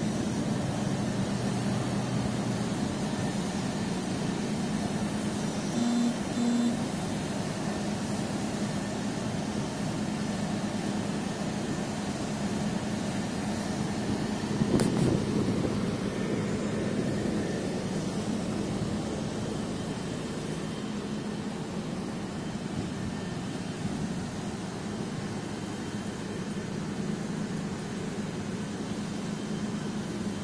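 A steady low machine hum, like an engine or motor running, over continuous outdoor background noise. Two short tones sound about six seconds in.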